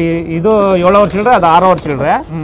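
A man talking close to the microphone.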